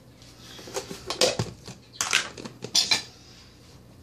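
Several separate clinks and knocks of a metal spoon against dishware in the kitchen, as butter is being scooped out.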